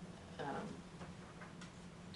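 A pause in a meeting room: a steady low hum, a brief murmured word about half a second in, and a few faint ticks after it.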